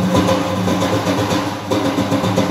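Music from daf frame drums, beaten in a steady rhythm of strokes over held, pitched tones from other instruments.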